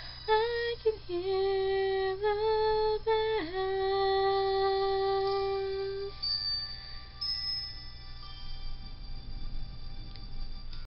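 A woman's solo singing voice on the closing notes of a song: a few short sung notes, then one long held note that stops about six seconds in.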